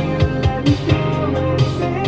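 Playback of a pop song mix: a beat with deep bass hits that fall in pitch, guitar, and the chorus vocal doubled in layered takes.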